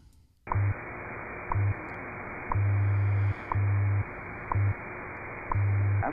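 WWV time station received on shortwave through a web SDR: static hiss with a short tick once a second and low hum pulses of differing lengths, WWV's time code. It starts about half a second in.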